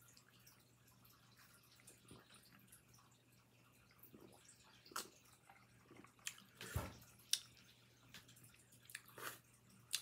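Quiet sipping and swallowing from a glass mug of iced drink, with a few short clicks and knocks as the ice and glass move. Most of the time it is near silence, with the sharpest sounds about five to seven seconds in.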